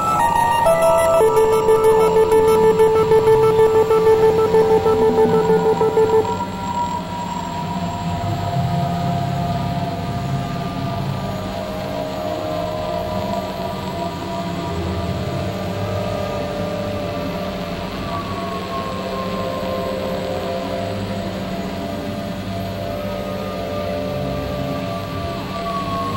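Experimental electronic synthesizer music made of layered sustained drone tones with slow pitch glides. A loud, wavering tone dominates the first six seconds and then cuts off, leaving quieter overlapping drones.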